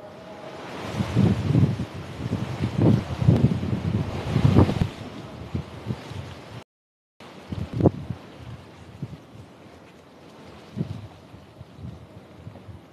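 Irregular low rumbling gusts of noise buffeting the microphone, strongest in the first five seconds. The sound cuts out briefly about seven seconds in, and a few isolated thumps follow.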